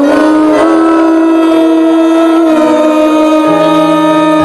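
Live male pop vocal: one long sustained sung note, the held word 'you', through a microphone over keyboard accompaniment, the pitch stepping down slightly about two and a half seconds in.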